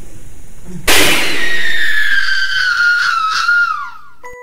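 A loud, high-pitched scream that breaks in suddenly about a second in and slides slowly down in pitch for about three seconds as it fades.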